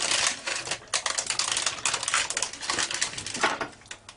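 Stiff parchment paper crinkling and crackling as it is held up around a cake tin while thick cake batter is tipped into it from a bowl, dying down near the end.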